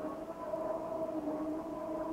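A siren-like sound: several held tones that drift slowly up and down in pitch.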